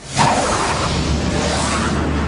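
A cartoon whoosh sound effect that cuts in suddenly just after the start and carries on as a loud, steady rush of noise.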